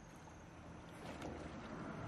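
Shallow stream water sloshing around a person's legs and hands as she wades and reaches into it, growing louder about a second in, with a few small clicks.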